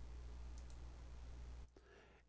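Faint room tone with a steady low electrical hum and a few faint computer mouse clicks; the sound cuts to dead silence near the end.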